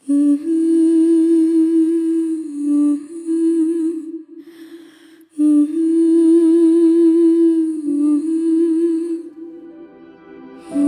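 A voice humming a slow, wavering melody in two long phrases, with a breath between them about four seconds in.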